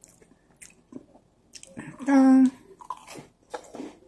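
Close-up chewing and crunching of a strawberry-creme Oreo sandwich cookie, with scattered crisp crackles and mouth sounds. About two seconds in comes a short, steady hummed "mmm" of enjoyment, the loudest sound.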